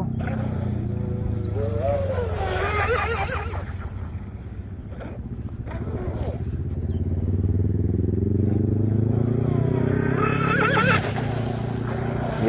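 Radio-controlled catamaran's brushless Traxxas 380 motor on a 4S battery, running across the water. Its drone eases off for a couple of seconds, builds up again as it speeds along, and cuts off sharply near the end.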